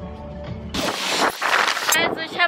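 Background music with a steady beat, cut off suddenly under a second in by a loud rush of wind buffeting the camera microphone.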